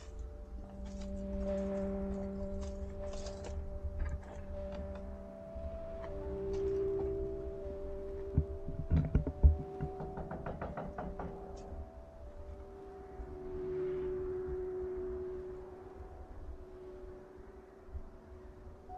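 Slow ambient background music of long held tones over a low rumble. Halfway through comes a quick run of knocks and thuds, one of them the loudest sound in the clip.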